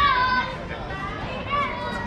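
Children's high voices calling out at play over the chatter of a crowd, with a loud child's call at the start and another about one and a half seconds in.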